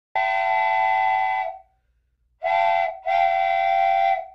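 A whistle of several notes sounding together, blown three times: a long blast of over a second, a short one, then another long one.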